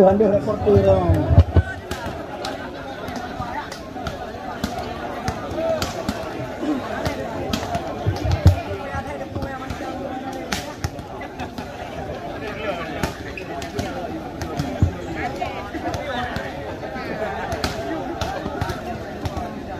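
Volleyballs being spiked and slapping off the court in a warm-up hitting drill: an irregular string of sharp smacks, the loudest about a second and a half in and again around eight seconds, over the steady chatter of a large crowd.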